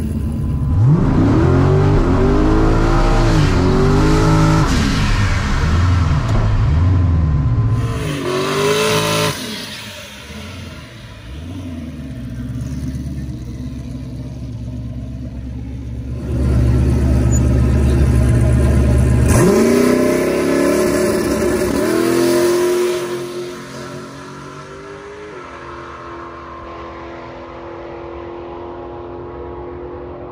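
Drag-race Ford Mustang engine revving in short blips, then held at high revs through a smoky rear-tyre burnout. Its pitch rises sharply as the car launches about twenty seconds in, and the sound falls away as the car runs down the quarter mile.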